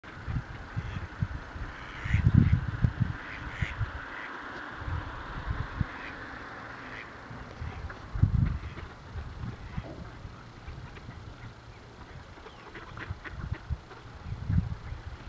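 A flock of mallards giving scattered chuckling quacks. Low rumbling bursts on the microphone come about two seconds in and again about eight seconds in.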